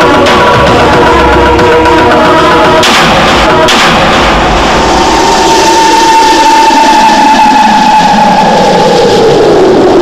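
Horror film background score: sustained music interrupted by two sharp hits about three seconds in, then a long held high tone that slowly sags, and a falling glide near the end.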